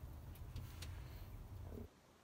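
Quiet steady low rumble with a few faint ticks and rustles of leek leaves being handled, cutting off abruptly to near silence near the end.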